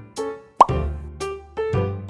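Light, cheerful keyboard background music, with a short rising 'plop' sound effect a little over half a second in.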